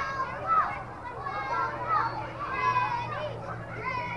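Several children's voices calling and chattering at once across a youth baseball field, none of it clear speech, over a faint steady low hum.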